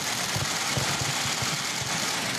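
Many press camera shutters firing at once in a dense, steady clatter as the two leaders shake hands, with low thumps of movement underneath.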